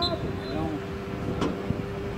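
Distant shouts and calls from soccer players, over a steady low hum, with a single sharp knock about one and a half seconds in.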